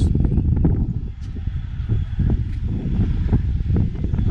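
Wind buffeting the camera's microphone: a loud, gusting low rumble that rises and falls.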